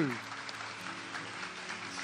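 Congregation applauding, an even patter of many hands clapping, over soft sustained background music.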